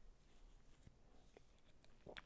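Near silence: room tone in a pause between spoken sentences, with a couple of faint small clicks.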